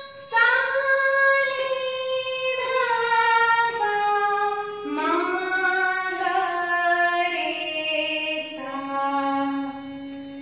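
A woman singing the descending scale (avroh) of the seven shuddh swars of Hindustani classical music, from upper Sa down to Sa. She holds each note for about a second and steps down in pitch about seven times.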